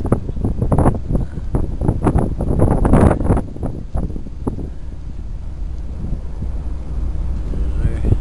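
Wind buffeting the microphone over the low rumble of a car driving slowly on a snowy road. The buffeting comes in irregular choppy gusts for the first few seconds, loudest about three seconds in, then settles into a steadier rumble.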